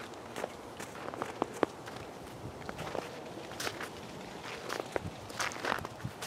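Faint, irregular footsteps in snow.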